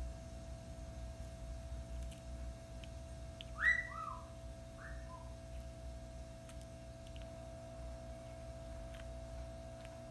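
Steady electrical hum, with a few short whistled notes about four seconds in: the first glides upward and is the loudest, followed by two lower, shorter ones.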